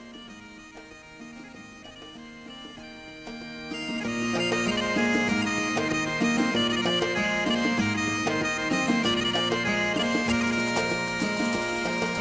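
Background folk music: a bagpipe-like melody of held notes over a steady low drone, quiet at first and growing louder about four seconds in.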